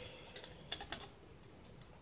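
A few light clicks from a plastic tripod pan-tilt head being worked by hand, with two sharper clicks close together about three-quarters of a second in.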